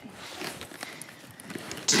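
Hard-shell spinner suitcase being closed and handled: light knocks, clicks and rubbing of the plastic shell as the lid is pressed shut and the case is shifted.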